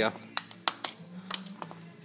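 Steel connecting rod and piston assemblies from GM Gen III and Gen IV V8s clinking against each other and the concrete floor as they are handled and set down side by side. There are a handful of sharp, separate clinks, the loudest about a third of a second in, spread over the first second and a half.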